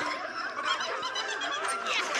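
Audio from several cartoon clips playing over one another at once: a dense, steady jumble of overlapping pitched voices and sounds, full of short gliding tones.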